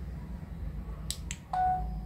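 Two quick clicks from a Bluetooth selfie-stick remote button being pressed, followed by a short electronic beep from the tablet's camera as video recording starts.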